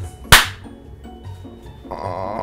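A single sharp crack about a third of a second in, over quiet background music with a repeating low riff.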